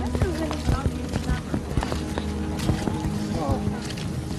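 Dogs whining and yelping in short rising-and-falling cries, about half a second in and again near the end, over a steady background music bed, with scattered knocks.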